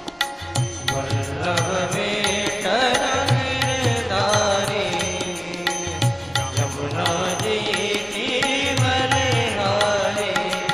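Indian devotional music: a voice chanting a melodic mantra over a steady, evenly paced drum beat, with plucked-string accompaniment.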